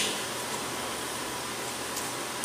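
Steady, even background hiss: room tone in a pause between spoken phrases.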